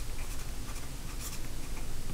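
Felt-tip marker writing on paper: a run of short, faint strokes as letters are written by hand.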